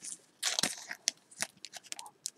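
A few short, light crinkles and clicks of a trading card being handled against a thin clear plastic sleeve, with a small cluster about half a second in and single ticks later.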